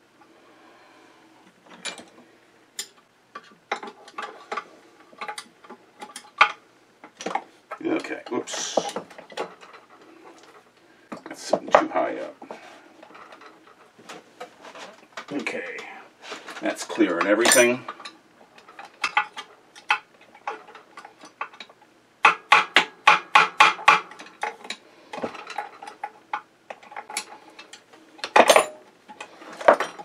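Light metal-on-metal taps of a hammer on a pin punch, driving a stuck part out of an old Singer sewing machine head. The taps come in scattered groups, with a quick run of about ten taps a little past the middle, mixed with tools clinking on the bench.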